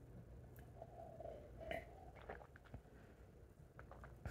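Faint mouth and throat sounds of a person drinking orange juice: a few soft clicks and brief swallowing noises.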